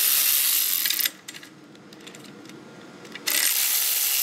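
Cordless 12V electric ratchet running as it backs off the cylinder-head nuts of a Yamaha Zuma two-stroke scooter engine. It whirrs for about a second, stops for about two seconds with a few faint clicks, then runs again near the end.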